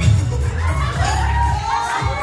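A crowd of people shouting and cheering, several high voices rising over one another from about half a second in, over loud background music with a heavy bass.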